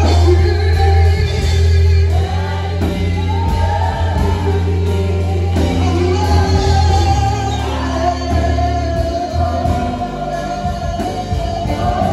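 Live gospel worship song. A man sings lead through a microphone, with backing singers, over guitars and a steady sustained low bass.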